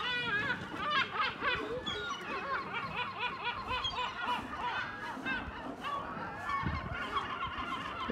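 A flock of yellow-legged gulls calling, many short repeated calls from several birds overlapping.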